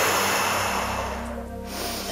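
A woman's forceful exhale through pursed lips, a long rushing breath that fades away over about a second and a half: the mouth exhale of Bodyflex diaphragmatic breathing. Steady background music underneath.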